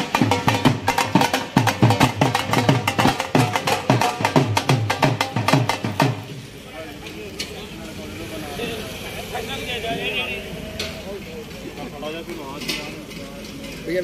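A group of double-headed barrel drums (dhol) beaten fast with sticks, the deep strokes dropping in pitch. The drumming stops about six seconds in, leaving people talking, and starts again at the end.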